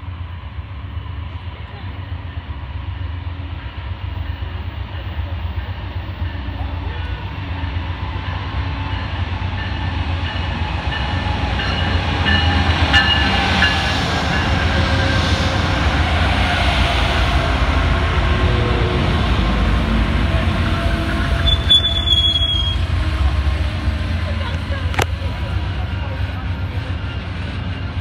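Amtrak passenger train arriving behind a GE P42DC diesel locomotive: a low engine rumble grows louder as the locomotive nears and passes about twelve seconds in, then the cars roll by slowly. Thin high brake squeals run through the second half, one sharp squeal comes about twenty-two seconds in, and a single clank follows a few seconds later.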